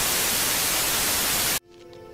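Television static hiss used as a glitch transition: a steady rush of white noise that cuts off suddenly about a second and a half in. Quiet, soft music follows.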